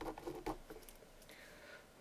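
A blue marker pen writing on a white board: a few short, faint scratching strokes in the first second, then it falls nearly quiet as the pen lifts off.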